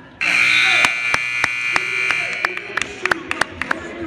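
Gym scoreboard buzzer sounding loud and steady for about two seconds, ending a wrestling period. A series of hand claps follows, about three a second.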